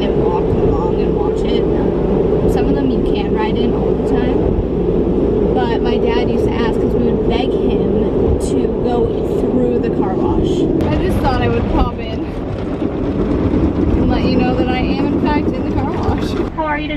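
Automatic car wash running over the car, heard from inside the cabin: a loud, steady rush and rumble of water spray and a rotating brush against the body and windows. About twelve seconds in the sound drops and changes. A woman's voice talks over it.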